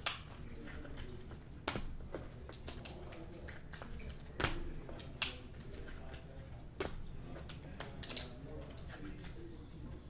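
Trading cards being handled in clear plastic sleeves and card holders: about six sharp plastic clicks and snaps at irregular intervals, the loudest at the start.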